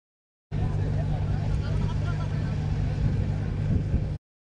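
A motor running close to the microphone: a loud, steady low hum with rumble, cutting in abruptly about half a second in.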